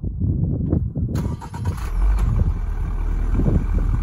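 Exhaust of a 2022 Toyota GR86's 2.4-litre boxer four-cylinder engine running, heard close at the tailpipe as a low, uneven rumble that grows a little stronger about two seconds in.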